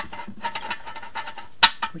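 Steel trapdoor flaps on loose-pin hinges in a sheet-steel sump baffle, flicked open by hand and dropping shut: a few light metallic ticks and one sharp metal clack about one and a half seconds in. The hinges swing freely.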